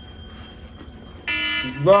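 Countdown timer alarm going off about a second in with a loud, steady electronic beep, rich in overtones, the first of a repeating on-off pattern: the one-minute time limit is up.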